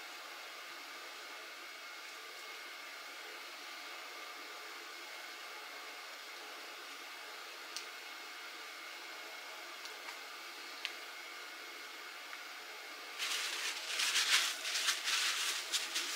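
A steady background hum with a few faint ticks. About thirteen seconds in it gives way to louder, irregular rustling and scraping as the pouch-cell pack of a swollen LiFePO4 battery is handled and lifted out of its case, with paper towel crinkling.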